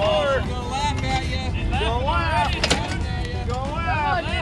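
High-pitched children's voices calling out over a steady low rumble, with one sharp click a little before three seconds in.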